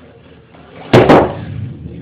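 Two sharp, loud knocks in quick succession about a second in, each cutting off fast with a short ringing tail.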